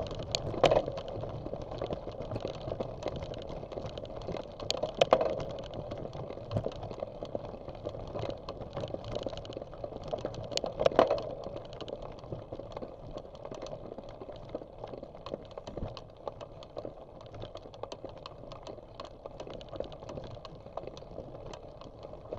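Bicycle rolling over a dirt and gravel trail, its tyres crunching and the bike rattling with a steady patter of small clicks. Three louder jolts come over bumps: near the start, about five seconds in and about eleven seconds in.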